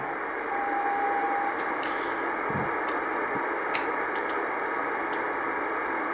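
Icom IC-R8500 communications receiver tuned to 14.100 MHz in CW mode, giving steady shortwave band hiss through its narrow filter. About half a second in, a single steady Morse tone sounds for about a second.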